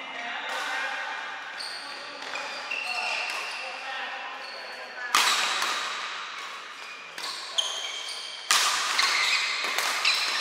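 Badminton rally on an indoor court: court shoes squeaking on the floor in many short high squeaks, and a few sharp racket hits on the shuttlecock, the loudest about halfway and near the end, with voices in the background.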